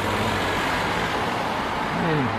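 Steady background noise of road traffic: an even hiss with a low hum underneath, with no single event standing out.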